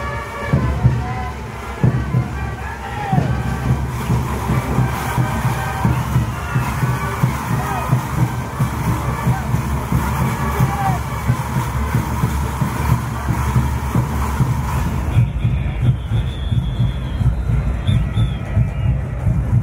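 Band music with a steady drumbeat, over the voices and cheers of a large crowd.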